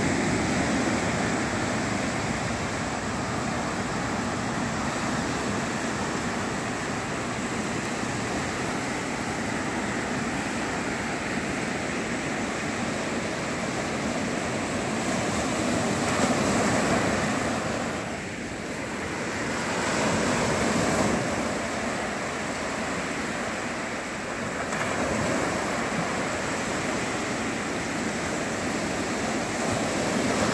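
Sea surf: small waves breaking and washing up a sandy shore, a continuous rushing that swells and eases every few seconds.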